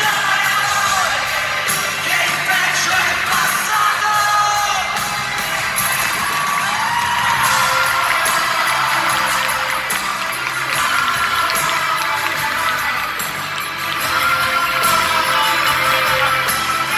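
Live pop-rock band playing in an arena, with singing and crowd cheering mixed in, heard from within the audience.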